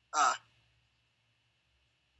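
A man's brief spoken "uh" near the start, then near silence.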